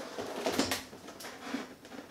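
Faint rustling and light knocks of a cardboard collectible box being handled, its top flap worked where the glue has come loose.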